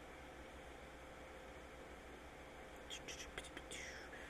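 Near silence: faint room tone with a steady low hum, and a few faint short sounds near the end.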